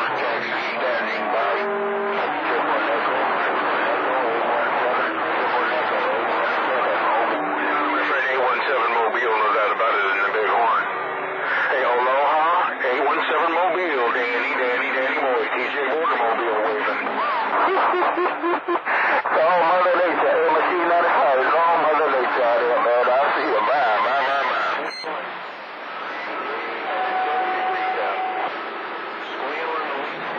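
Voices coming over a CB radio receiving channel 28 skip: garbled, narrow-sounding radio speech that the listener can barely make out, with voices overlapping. A brief steady whistle is heard near the end.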